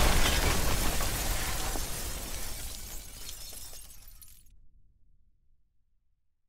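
Intro sound effect of something shattering, with debris crumbling and scattering, steadily fading out over about four seconds into silence.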